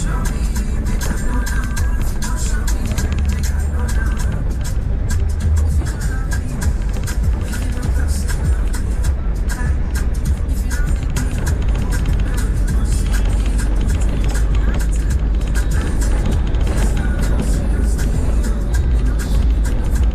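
Music with a singing voice over the steady low rumble of a car driving on a rough dirt road.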